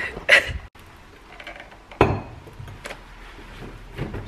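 Six-packs of glass bottles being set down on a kitchen counter: one sharp knock with a short glassy clink about two seconds in, then a couple of faint taps.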